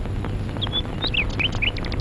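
Small birds chirping: a string of short, quick up-and-down chirps, then a fast run of ticking notes near the end, over a low steady hum.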